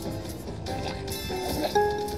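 Slot machine bonus-round music and electronic chimes as a collector symbol tallies credits into the running total. The sound is a series of short held synth notes, with a sharper accent near the end.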